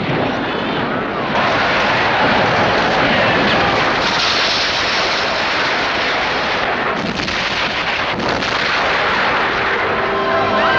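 Film battle sound effects of cannon and rifle fire, blended into a dense, continuous din that grows fuller about a second in.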